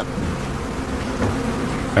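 A dense swarm of honeybees buzzing: a steady drone of many overlapping tones.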